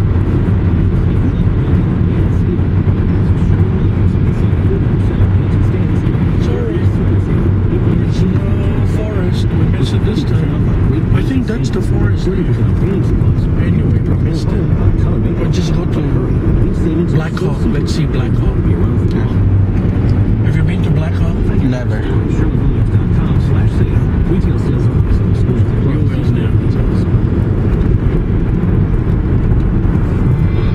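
Steady low road rumble inside a moving car's cabin, with a few light clicks scattered through it.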